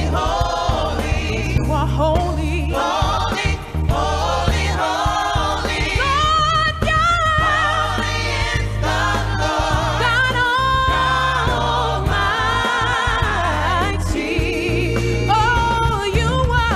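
Gospel music: a woman singing lead with vibrato over a band with a deep bass line.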